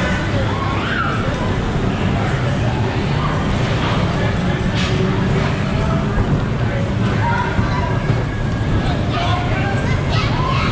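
Steady, loud din of a dodgem ride: people's voices and calls over a constant low rumble from the cars and the track.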